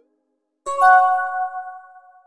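Phone text-message alert chime: a short ringing tone of a few pitches that starts a little after half a second in, steps up once, and fades over about a second.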